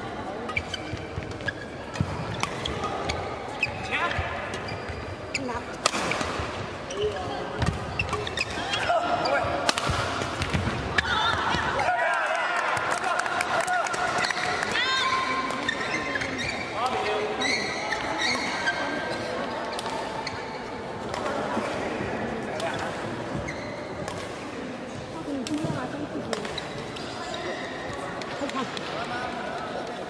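Live badminton rally: sharp, irregular hits of rackets on the shuttlecock, with voices of players and spectators chattering in the background.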